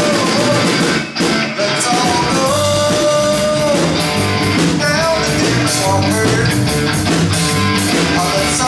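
Live rock band playing: electric guitar, bass guitar and drums together, with a short break in the music about a second in.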